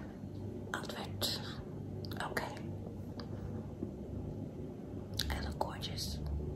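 Soft breathy mouth sounds close to the microphone: a few short puffs of breath over a low, steady room hum.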